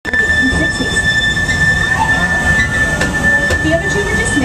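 A train car rolling along the track with a steady, high wheel squeal over a low rumble, heard from on board.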